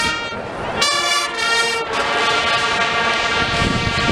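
Marching band brass section playing loud held chords. After a short break at the start, a bright chord sounds about a second in, and further sustained chords follow.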